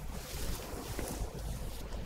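Satin cloth swishing and rustling as it is pulled off an object: a quiet, airy rushing noise with no clear tone.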